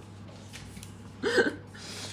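Quiet room tone with a faint steady hum, broken about a second in by one short vocal sound from a woman, a single brief syllable rather than words.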